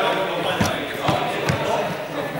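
Three dull thumps on a sports hall floor, about half a second apart, over the chatter of voices in a large hall.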